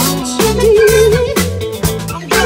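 A live band playing a groove with a steady beat from drums and bass under keyboards. About half a second in, a lead line is held for roughly a second with a wavering vibrato.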